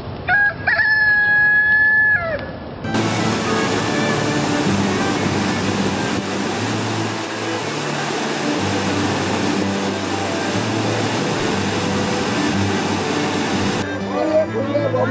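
A rooster crows once, a long held call that bends at the end. From about three seconds in, the steady rushing roar of a large waterfall takes over.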